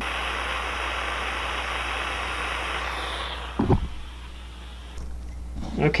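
Heat gun blowing steadily to shrink heat-shrink tubing, then switched off about three and a half seconds in, its fan winding down. A single knock follows.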